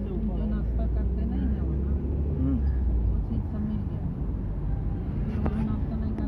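Steady low engine and road rumble of a car driving along a paved road, heard from inside the cabin, with people talking over it.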